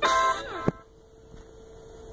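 A woman's short "yeah" and laugh played through a TV speaker, cut off by a sharp click under a second in, then a faint steady hum.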